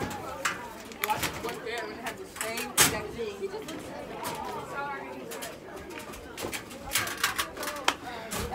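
Students chattering in a busy school hallway, with sharp metal clanks and clicks of locker doors and latches, the loudest about three seconds in and several more near the end.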